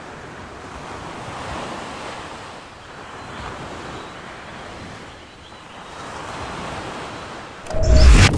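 Ocean surf washing in slow swells, with some wind. Near the end a sudden loud low boom.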